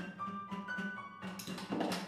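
Free-improvised duo of upright piano and drums: a few sparse held high piano notes against light clicks and scrapes on a cloth-covered snare drum, the percussion growing busier toward the end.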